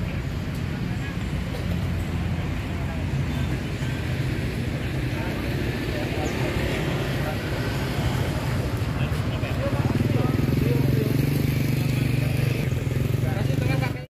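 A steady low motor rumble that grows louder about ten seconds in, with indistinct voices in the background.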